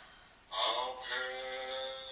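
A quieter voice holds one long word in a steady, chant-like tone, starting about half a second in.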